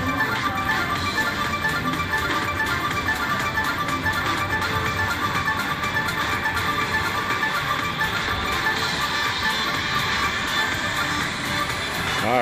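Crazy Money Gold slot machine playing its bonus-wheel music and jingles while the prize wheel spins, a steady layered electronic tune.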